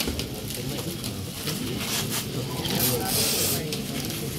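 Shiny foil gift wrapping crinkling and tearing as several people unwrap packages at once, louder around three seconds in, over a low murmur of voices.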